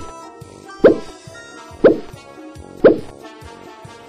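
Slow popping sound effects: three single pops about a second apart, over background music.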